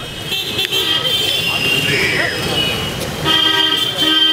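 Vehicle horns honking in street traffic over people talking. The longest and loudest horn blast, a steady held tone, sounds during the last second.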